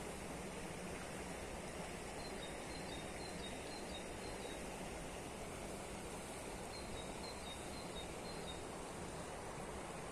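Shallow river water running steadily over a stony riffle, an even rushing hiss. Faint high chirps come and go in short runs over it.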